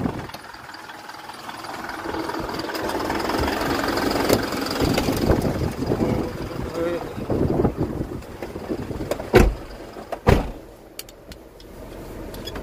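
Wind and movement outside a truck, then two sharp thumps about a second apart near the end as a person climbs up into the truck cab and the cab door is slammed shut.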